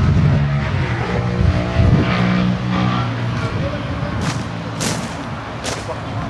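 A car engine running with a steady low hum, loudest in the first three seconds and then fading. Near the end come a few sharp clicks of camera shutters.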